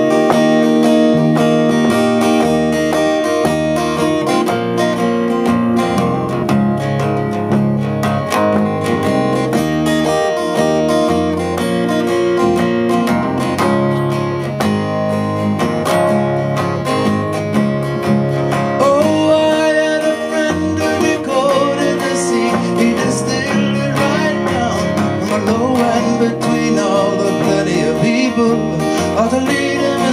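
Two acoustic guitars played together in a live instrumental introduction, plucked and strummed chords with a moving bass line; a higher, wavering melody joins about two-thirds of the way through.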